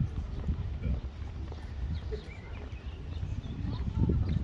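Footsteps of someone walking on brick paving, heard as irregular low thuds with a low rumble of handling and wind on the microphone.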